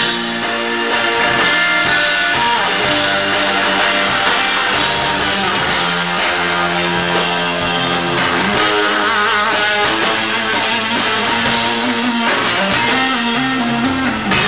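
Live rock band playing an instrumental passage: an electric guitar on a Fender Stratocaster leads over bass and drums. The guitar holds sustained notes, with a wavering vibrato note about nine seconds in and bent notes near the end.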